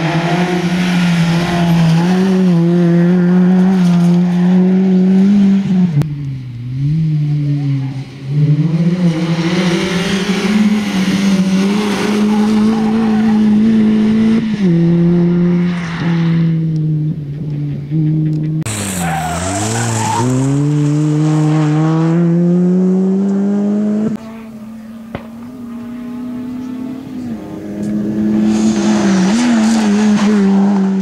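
Peugeot 206 rally car driven flat out: its engine is run at high revs, with the pitch stepping and dipping at gear changes. A little past halfway it drops sharply as the car slows for a corner, then climbs steeply as it pulls away. The engine is quieter for a few seconds near the end, then loud again.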